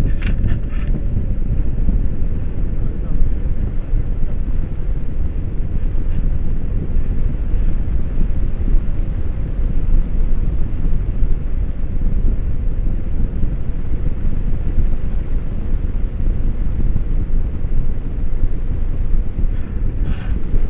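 Wind noise from the airflow of a paraglider in flight hitting a selfie-stick camera's microphone: a loud, steady low rumble.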